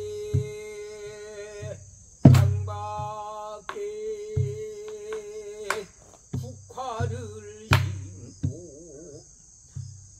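Korean traditional sori singing: long held notes that waver near the end, accompanied by a buk barrel drum's deep strokes and sharp stick strikes.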